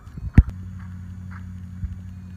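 A single sharp click about half a second in, then a steady low hum.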